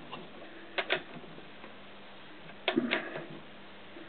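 Honda CX500 engine being turned over by hand with a tool on its shaft: two short bursts of light metallic clicks, one about a second in and one near three seconds.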